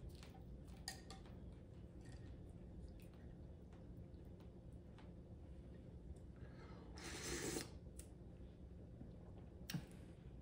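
Quiet room with faint, scattered clicks of chopsticks and a soup spoon against a bowl, and a short slurp of broth from the spoon about seven seconds in.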